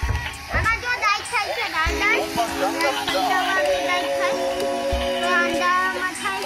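A dancing robot toy playing its built-in song through its small speaker: a high, chirpy sung voice over steady electronic notes, with a few low thumps.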